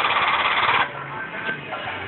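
Power unit of a 60-ton shop press running loudly and steadily as it presses the spring to re-arch it, then shutting off a little under a second in, leaving a faint low hum.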